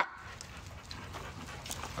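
Rottweilers panting faintly.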